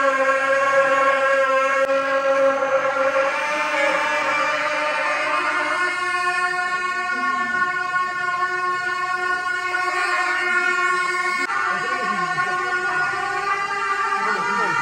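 Tibetan gyaling, monastic double-reed horns, playing long held notes together, the melody shifting to new notes about six seconds in and again near twelve seconds.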